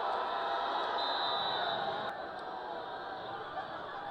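Stadium crowd at a college football game: a steady hubbub of many voices. A thin, high steady tone sounds for about a second, starting about a second in.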